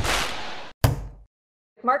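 Broadcast transition sound effect for an animated title card: a noisy swoosh that fades and cuts off, then a single sharp hit a little under a second in that quickly dies away.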